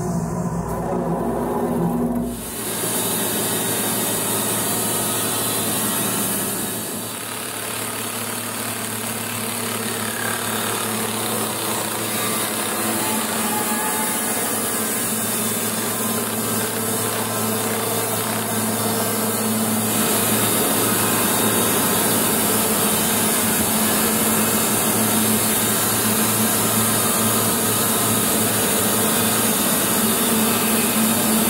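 Logosol B751 Pro band sawmill running steadily, its blade cutting lengthwise through a large spruce log.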